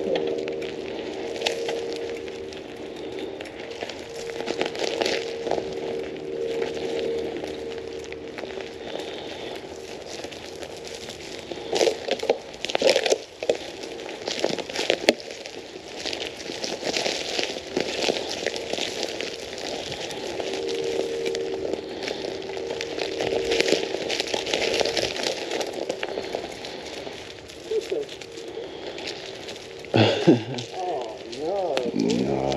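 Dry twigs and leaf litter crackling and snapping as the riders push through brush off the trail, with a cluster of louder sharp cracks about twelve to fifteen seconds in. A steady hum comes and goes behind it.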